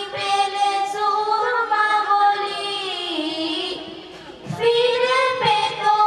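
Three girls singing a Bengali song together into microphones, in long held notes that glide between pitches. The voices fade and break off briefly about four seconds in, then come back in.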